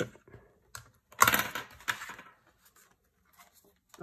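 Cream cardstock being lifted and pulled off a plastic punch board, a papery rustle and tear lasting about a second, with a few light plastic clicks from the cutting blade being set down. The blade's cut had not gone fully through the sheet.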